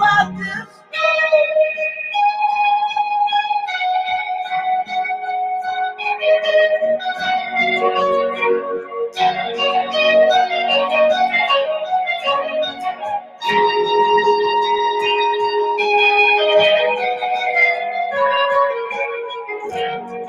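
Live rock band playing: electric guitar and electric keyboard chords over bass guitar, in sustained notes that change every second or two.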